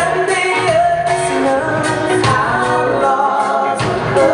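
Live pop-rock concert music: a singer holding long notes over the band, heard from the audience in a large hall. The bass drops out for a moment near the end, just before the full band with drums and guitar comes back in.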